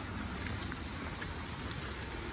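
Steady rain falling, an even hiss with a low rumble underneath.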